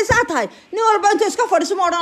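Speech only: a fairly high-pitched voice talking, with a short pause about half a second in.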